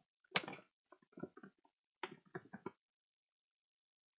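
Paper envelopes being handled in an expanding file folder: a short rustle about half a second in, then a few light ticks and taps over the next two seconds.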